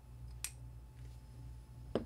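Two light clicks about a second and a half apart as a small metal tool works at the pinion bearing in a fishing reel's gear-side plate, over a low steady hum.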